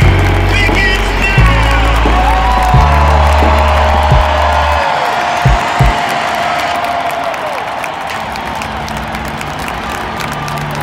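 A solo singer performs the national anthem over a stadium PA. After a few sliding phrases she holds one long high note for several seconds, with crowd noise beneath. A heavy low rumble under the singing stops about halfway through, and two short knocks follow.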